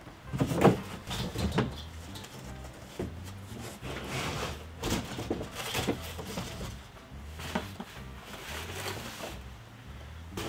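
Metal smoker parts and cardboard being handled and lifted out of a box: a series of irregular knocks and clunks, the loudest about half a second in, over quiet background music with a steady bass.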